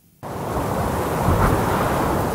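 A steady rushing whoosh of noise, like wind or surf, that starts abruptly a fraction of a second in and swells slightly around the middle: the transition sound effect of a TV programme's closing ident.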